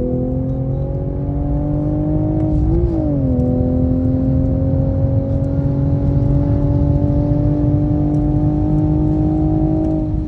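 A Toyota GR Supra A91's turbocharged 3.0-litre straight-six, heard from inside the cabin, pulling under throttle on a race track. The revs climb, drop with a manual gear change about three seconds in, then climb slowly and steadily again.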